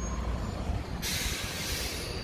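Road traffic rumbling past, then about a second in a sudden loud hiss lasting about a second: a heavy vehicle's air brakes releasing.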